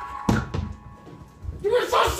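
A sharp thump as a person gets up from the keyboard, followed by softer low thuds of footsteps on the floor, while a held keyboard note fades out underneath. Talking starts near the end.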